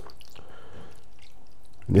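Water poured from a stainless steel measuring cup onto thick pasta sauce in a slow cooker, making a faint trickling and dripping.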